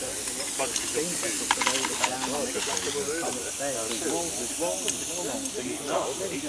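Live-steam model Ivatt 2-6-2 tank locomotive hissing steadily with escaping steam, with a few light clicks about a second and a half in.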